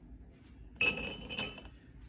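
Glassware clinking: a ringing clink about a second in, followed by a second, lighter one just after.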